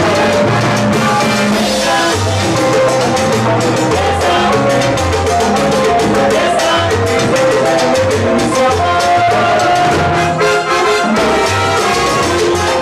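Live salsa orchestra playing: a bass line and Latin percussion under brass lines from trumpets, trombone and alto saxophone.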